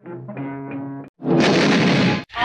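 Early cartoon soundtrack music, a steady orchestral passage with held pitched notes, for about a second. It cuts off abruptly, and after a brief gap a loud, harsh, noisy sound with no clear pitch begins.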